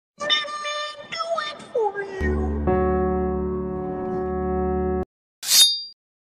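Meme sound-effect audio: about two seconds of voice-like sound with gliding pitch, then a steady held musical tone for nearly three seconds that cuts off suddenly, and a brief high-pitched sound near the end.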